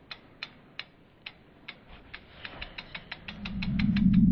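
Sound effect for an animated logo: dry, ratchet-like clicks that speed up from about three a second to six or more, while a low rumble swells up near the end.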